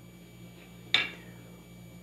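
A single light clink of a metal spoon against the filling dish about a second in, over a faint steady low hum.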